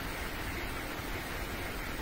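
Steady, even hiss of room tone with no distinct event.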